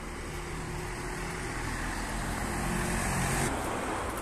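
A road vehicle passing on the street: its engine hum and tyre noise grow louder, peak about three and a half seconds in, then drop away.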